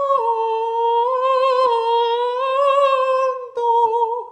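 A single high voice, unaccompanied, singing long held notes with slight wavering in pitch, broken by short gaps between phrases about one and a half seconds in and near the end.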